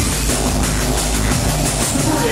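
Drum and bass DJ set played loud over a club sound system, with a heavy, steady sub-bass under dense drums.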